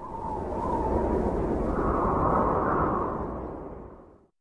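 Cinematic intro sound effect for an animated title logo: a deep rumbling whoosh that swells over about two seconds, holds, then fades away near the end.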